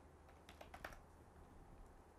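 Very faint computer keyboard typing: a scattering of soft keystrokes as a short word is typed.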